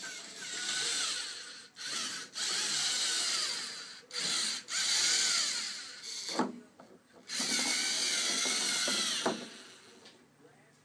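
LEGO Mindstorms NXT robot's servo motors and gears whirring in several starts and stops, each run lasting up to about two seconds, with a high whine that wavers in pitch.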